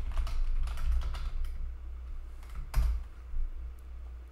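Computer keyboard being typed on: a quick run of keystrokes, then a few scattered single keys, one louder key strike a little before three seconds in.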